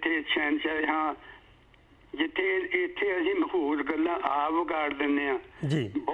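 Speech only: a man talking over a remote call line, the voice thin and cut off above the upper middle range, with a pause of about a second near the start.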